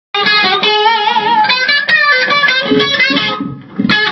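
Electric guitar playing a run of single notes, with a wavering vibrato on some held notes; it drops away briefly near the end and comes straight back in.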